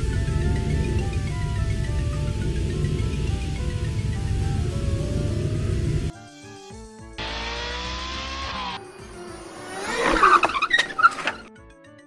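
Cartoon racing sound effects: a cheerful music track over a low race-car engine rumble, which cut off about halfway through. A car whooshes by with a rising whine, then tyres screech loudly near the end as the car suddenly stops, its engine having died.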